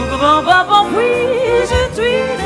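Female jazz vocalist scat singing, wordless syllables in a bending melodic line, over a jazz orchestra with strings, piano and double bass.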